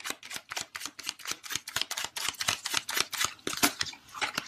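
A tarot deck being shuffled by hand: a rapid, uneven run of sharp card clicks and flicks, many a second.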